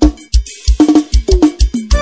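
Forró track in a drum break: the keyboard drops out and the drums play alone, with a steady kick beat and short hits falling in pitch. The full band comes back in at the very end.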